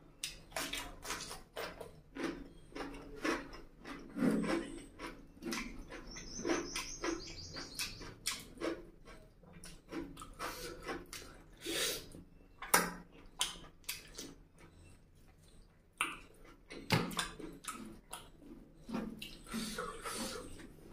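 Close-miked chewing of a mouthful of curry and rice, full of wet mouth smacks and irregular clicks, several a second.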